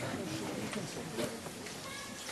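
Faint, indistinct voices with a few soft clicks.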